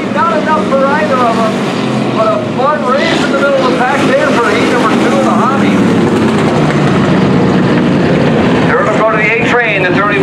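Engines of several hobby stock race cars running at speed around a dirt oval, a steady mechanical noise.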